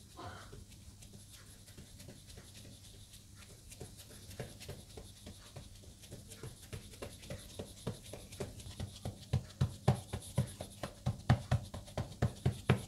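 A hand patting and pressing a ball of keema-stuffed naan dough flat on a granite countertop. The pats are soft, dull thuds, faint at first, then louder and quicker in the second half at about two to three a second.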